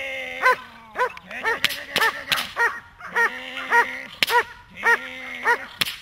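German Shepherd barking hard and repeatedly, about ten barks roughly half a second apart, in protection training as it lunges at the decoy on the leash. Longer held cries come between some barks, and a few sharp cracks are heard.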